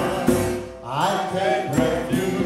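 Choir and band performing a mantra chant song, a woman's lead voice singing with the choir. The music dips briefly just under a second in, then a voice slides upward in pitch.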